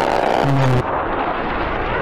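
Fighter jet roaring past low overhead, loud. The roar starts abruptly, and its hiss dulls about a second in, leaving a deeper rumble.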